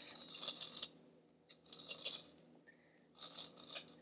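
A wooden pencil twisted in a handheld plastic pencil sharpener, the blade shaving off wood and lead in three strokes about one and a half seconds apart.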